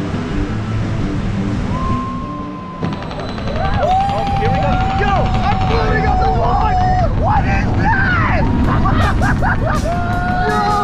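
Roller coaster riders yelling and whooping through a launch, over low rumbling wind and train noise on the onboard camera's microphone. The low rumble comes first; the yells start about three seconds in and keep going, many voices overlapping.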